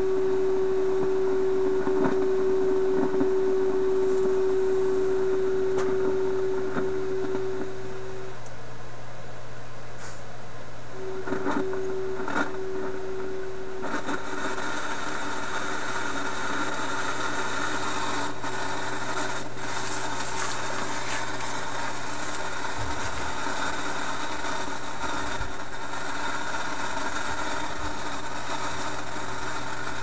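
Philips 922 tube radio's speaker sounding a steady test tone of about 400 Hz over a low mains hum. The tone drops out about eight seconds in, comes back a few seconds later, then weakens as hiss rises: the signal fading in and out by itself, the set's unstable operation.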